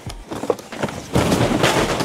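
A pile of cardboard shoeboxes falling over: a few knocks, then about a second in a loud clattering tumble that lasts about a second.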